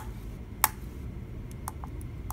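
Small switches on a homebuilt computer's circuit board clicking as they are pressed: a sharp click at the start and another about half a second later, then a few faint ticks near the end.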